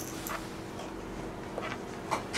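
Six-month-old baby making short, soft vocal sounds, one near the start and another near the end.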